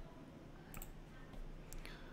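Faint sharp clicks from a computer being operated to bring up a slideshow, a couple of them about a second apart, over a low steady room hum.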